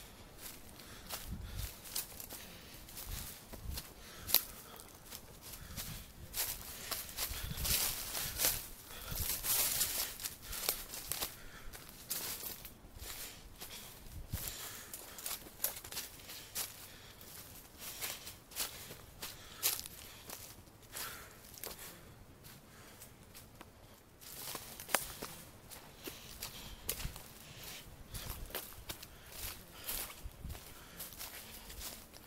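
Footsteps of a person hiking a woodland trail, an irregular run of rustling, crackling steps.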